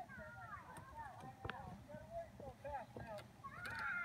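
Faint children's voices and chatter in a playground, with a couple of light knocks.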